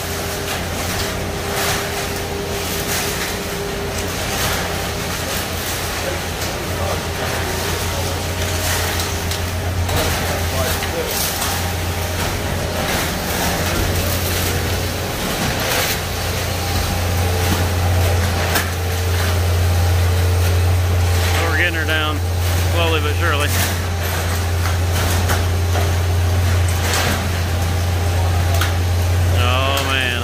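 Concrete boom pump truck running at a steady low drone as it pushes concrete through the line, with scattered knocks and clacks from the pumping.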